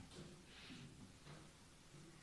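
Near silence: room tone with a few faint, indistinct sounds.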